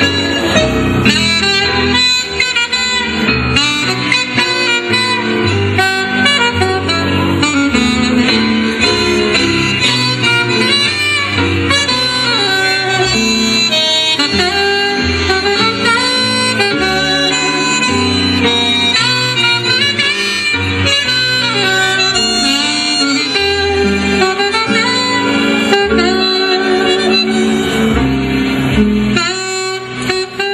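Saxophone playing a tango melody over a bass accompaniment. The music stops short right at the end.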